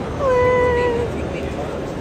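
A small child's voice giving one drawn-out vocal call lasting under a second, starting a little higher and settling to a steady pitch, over the murmur of a busy indoor space.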